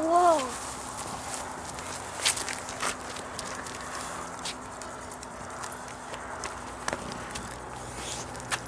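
An English bulldog's claws clicking and scuffing on concrete as it walks about, in scattered, irregular clicks.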